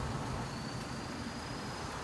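Steady low rumble of road traffic, with a faint high whine rising slowly in pitch.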